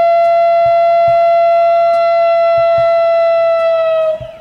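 Electric lead guitar holding one long sustained high note, steady in pitch and sagging slightly just before it stops, over soft low drum thumps from the band.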